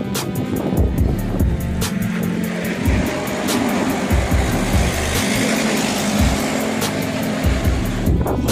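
A container truck on a semi-trailer passing close by, its road noise swelling through the middle of the stretch and fading near the end, under background music with a steady beat.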